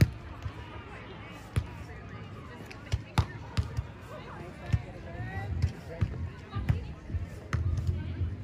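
Several sharp smacks of hands and forearms striking a beach volleyball during a rally, a second or two apart, with voices calling out between them.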